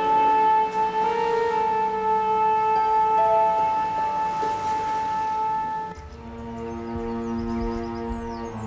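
Background drama score: a long held high note over sustained chords, changing to a lower sustained chord about six seconds in.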